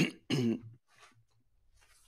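A man clearing his throat: a sharp catch right at the start, then a short rasp within the first second.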